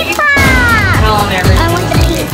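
Background music with a steady beat, over which a pitched sound slides downward over most of a second early on, followed by shorter pitched sounds.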